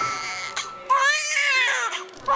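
Newborn baby crying: one long wail that rises and falls, starting about a second in, as a piano note fades out.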